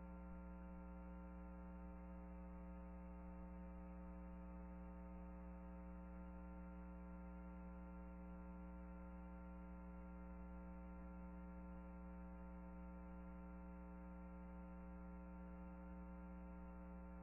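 Faint, steady electrical mains hum from the recording chain, unchanging throughout, with no other sound.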